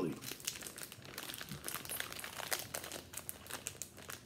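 Thin plastic donut wrapper crinkling and crackling in irregular bursts as it is handled and pulled open by hand.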